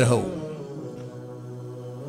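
A man's amplified voice trails off in a falling pitch, then holds a low, steady hum with his mouth closed, a drawn-out hesitation sound between phrases.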